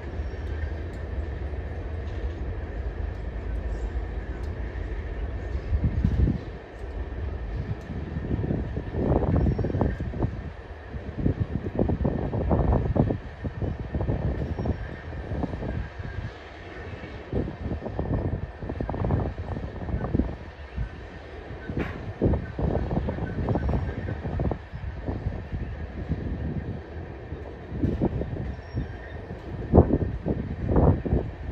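Freight train of tank cars rolling slowly past: a steady low rumble for about the first six seconds, then an uneven run of thumps and clanks from the moving cars.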